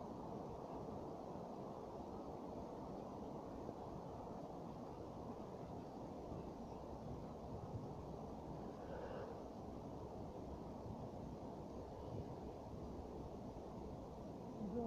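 Faint, steady, low-pitched background noise with no distinct event, the kind of ambient rumble a phone picks up outdoors.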